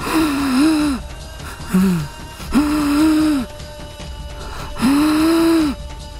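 A woman on an oxygen mask gasping for breath: four strained, voiced gasps, each rising and falling in pitch, laboured breathing from breathlessness.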